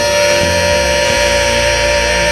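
Gospel singers holding one long sustained note over instrumental accompaniment, the closing word of the song.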